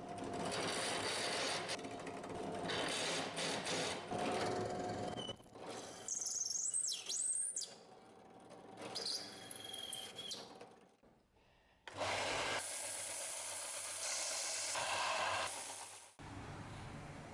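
Benchtop drill press running a conical bit into the screw holes of a steel vise jaw plate, giving high squeals that slide up and down in pitch. About twelve seconds in it is replaced by a belt sander grinding the face of a steel jaw plate, a steady even rasp.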